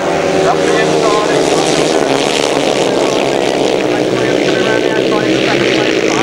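Several grasstrack solo racing motorcycles with single-cylinder engines, running together at full throttle in a steady, dense mass of engine noise.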